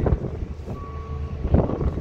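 Wind rumbling on the microphone, with a short steady beep about halfway through.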